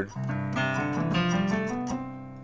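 Keyboard sounding a held C major chord voicing, with some of the notes changing partway through; the chord rings on and fades near the end.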